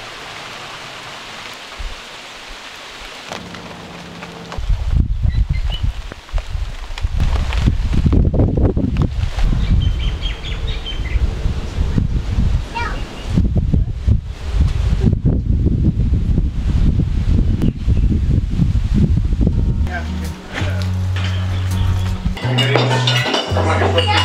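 Rain falling in a steady hiss, then a long rolling rumble of thunder over the rain, with a few faint bird chirps. Near the end, music with steady bass notes comes in.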